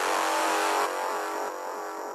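Electronic psytrance music with the drums dropped out: a sustained noisy synth swell over a held note, with a quick run of falling electronic blips, fading down about a second in.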